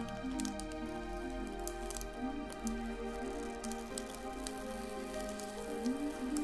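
Slow, soft piano music with sustained notes, overlaid with faint scattered crackling clicks.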